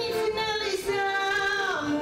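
A woman singing into a microphone, holding long notes, her voice sliding down in pitch near the end.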